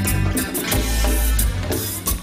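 Live cumbia band playing an instrumental passage: electric bass and drums with accordion, the drum strokes keeping a steady dance beat.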